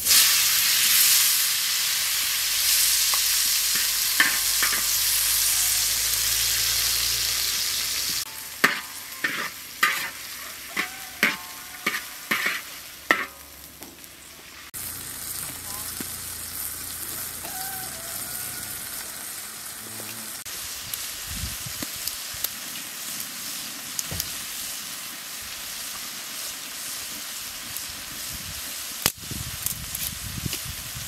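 Chopped tomatoes poured into hot oil in a wide, shallow metal pan, sizzling loudly at first. About eight seconds in comes a run of about ten sharp clicks and knocks, followed by a quieter, steady sizzle of the tomatoes frying.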